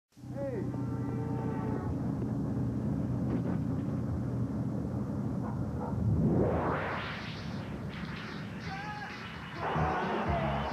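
Commercial soundtrack: a steady low rumbling drone with a few held tones, then a loud rising whoosh about six seconds in, and rock music starting just before the end.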